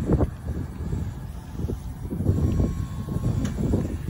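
Braun wheelchair lift raising its platform under power: its hydraulic pump runs as an uneven low rumble, with a faint steady whine for about a second in the middle, mixed with wind on the microphone.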